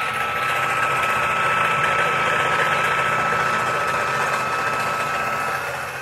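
Electric fishing-line spooling machine winding line onto a Van Staal spinning reel, its motor running with a steady whine that starts to drop in pitch near the end as it slows.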